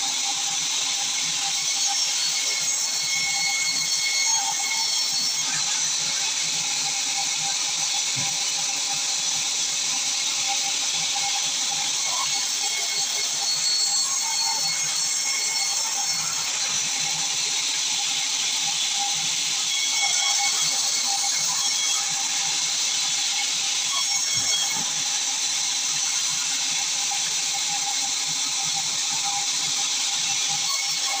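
Sawmill band saw running and cutting through a large log, a steady high-pitched hiss from the blade with a faint whine under it.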